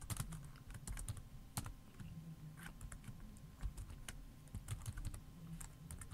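Computer keyboard typing: faint, slow, irregular keystrokes as a short text command is typed.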